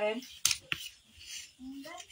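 A voice trailing off, then two sharp clicks about a quarter second apart, and a short voiced sound near the end.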